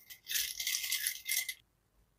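Ice cubes rattling and clinking against a glass cup as iced coffee is stirred, with a faint glassy ring. It stops about a second and a half in.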